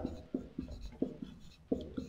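Stylus writing on a tablet screen: a handful of light, quick taps and scratches, about six strokes in two seconds, as letters of a chemical formula are written.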